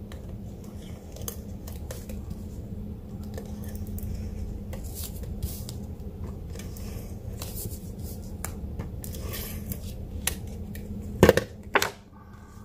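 Stampin' Seal adhesive tape runner laying glue strips along cardstock: short scratchy strokes and small clicks over a steady low hum. Near the end come two loud knocks as the runner is set down on the table.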